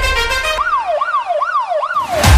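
Held musical tones fade into a siren wailing quickly up and down, about four rising-and-falling sweeps in a second and a half.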